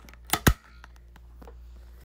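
Two sharp knocks close together about half a second in, the second the louder, as the smartphone that is filming is grabbed and moved by hand, with a faint click later.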